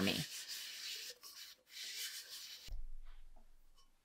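Faint rubbing and handling of a coated stainless-steel tumbler in the hands, strongest in the first second, then a few quieter rustles.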